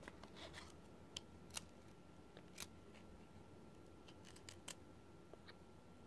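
Near silence, broken by a few faint, sharp clicks and ticks of stiff trading cards being thumbed through one after another in the hands.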